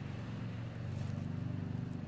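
A steady low mechanical hum at an even level.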